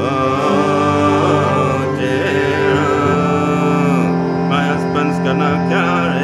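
Instrumental passage of a traditional English folk song played live: a fiddle melody, wavering and sliding in pitch, over a steady sustained drone, with no words sung.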